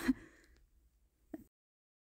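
A woman's breathy exhale, like a sigh, trailing off the end of her speech, then a single faint click about a second later, followed by dead silence.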